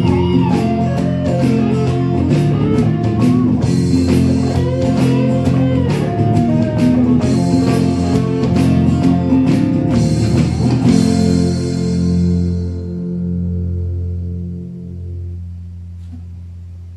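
Band-style instrumental outro of guitars, electric bass and keyboard over a steady beat. About eleven seconds in, the beat stops on a final held chord that rings out and fades.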